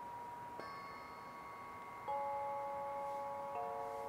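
Tuned metal chimes struck three times, each note lower than the last, each ringing on so that the notes overlap and build into a lingering chord.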